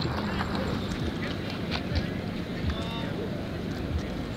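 Footsteps on gravel, about two a second, with faint distant voices behind them.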